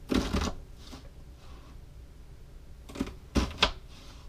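Kitchen knife cutting an onion on a plastic cutting board: a quick flurry of cuts just after the start, then three sharp knocks of the blade on the board near the end.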